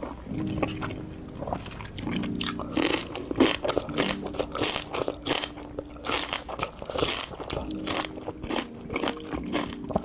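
Close-miked crunchy bites and wet chewing of leafy kimchi, with sharp crunches coming thick and fast from about two seconds in. Short, low, steady hums sound between bites.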